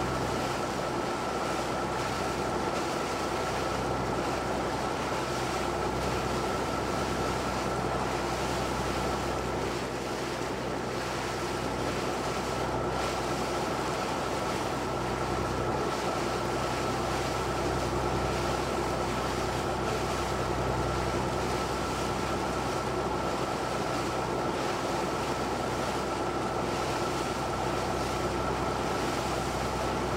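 A boat's engine running steadily underway, with a constant high whine over the wash of sea water and wind.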